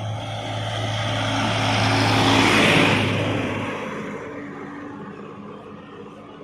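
A small tractor drives past, its engine and road noise growing louder to a peak about halfway through and then fading away.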